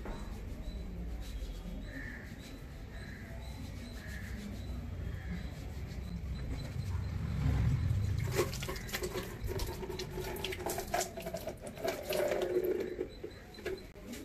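Water tap turned on to a thin trickle running onto cupped hands about halfway through, with splashes and sharp clicks of handling from then on.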